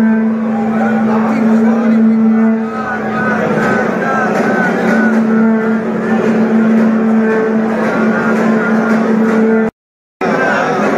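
Dense crowd of temple devotees' voices over a steady, low droning tone. The sound cuts out abruptly just before the end.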